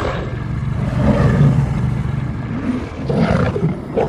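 Wolves growling low. The growl is loudest from about one to two seconds in and swells again near the end.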